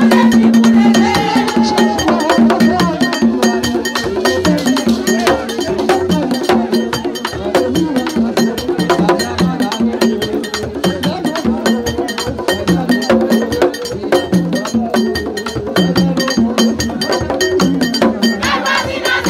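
Haitian Vodou ceremonial music: a group sings a call-and-response-style chant over drums and a fast, steady clicking percussion.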